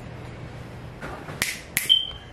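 Fingers snapping twice, two sharp clicks about a third of a second apart, near the end.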